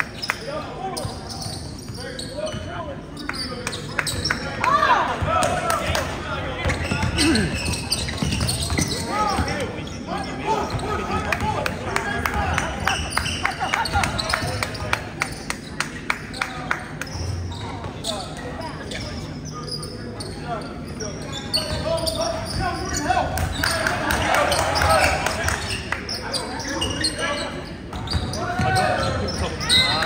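Basketball bouncing repeatedly on a hardwood gym floor during live play, mixed with players' and spectators' voices calling out in the gym.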